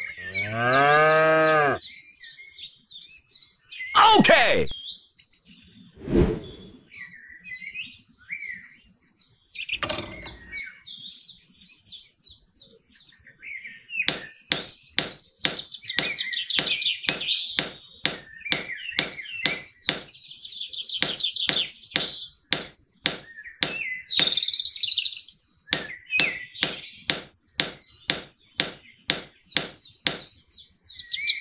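A cow moos once at the start, then birds chirp. From about halfway on, a small hammer taps wooden posts into sand in quick, even knocks, about two a second.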